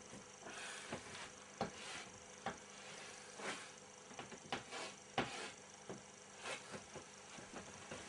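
Chalk writing on a blackboard: faint, short scratching strokes at irregular intervals as letters are drawn.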